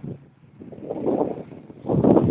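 Wind gusting through tree leaves and buffeting the microphone, swelling up out of a brief lull about half a second in.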